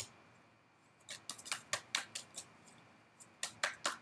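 Tarot cards being shuffled by hand: about a dozen light, irregular clicks and snaps of card edges, starting about a second in.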